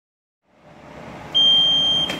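A gym round timer's electronic beep: one long, steady, high-pitched tone, starting after about a second and a half, signalling the start of a sparring round over low gym room noise.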